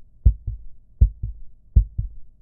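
Heartbeat sound: deep double thumps, lub-dub, repeating a little faster than once a second.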